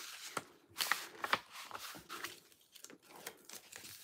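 Cardboard mailer and a plastic-wrapped item being handled: rustling, crinkling and scraping as the item slides into the mailer and the flap is pressed down, with a few short crisp clicks.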